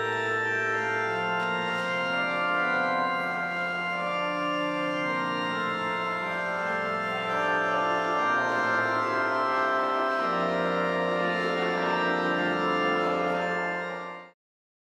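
Church organ playing the closing voluntary after the end of Mass: sustained full chords over a slowly moving bass line.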